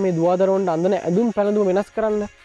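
A man speaking Sinhala in continuous, unbroken talk, with a faint steady high hiss behind the voice.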